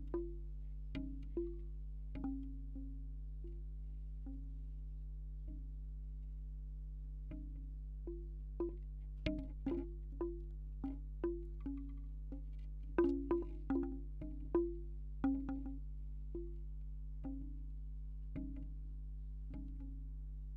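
Bamboo wind chime, its hollow tubes knocking irregularly, each clonk ringing briefly at its own pitch. The knocks are sparse at first, come thick and fast in the middle and thin out again near the end, picked up by contact microphones on the tubes over a steady low hum.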